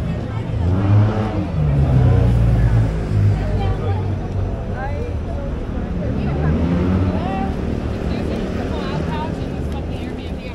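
City street ambience dominated by a motor vehicle's engine, loudest about one to three seconds in, with people talking in the passing crowd.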